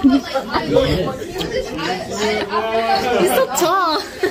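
Overlapping chatter of several teenagers' voices, with no clear words.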